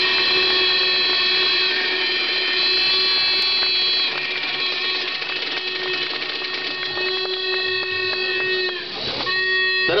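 Crowd applauding while several horns are blown in long held tones, overlapping at different pitches; the horns mostly stop about nine seconds in.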